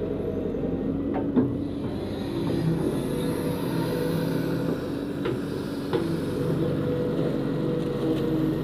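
Diesel engine of a Hitachi EX120-1 hydraulic excavator running steadily under load as it digs mud from a ditch with its bucket, with a few short knocks.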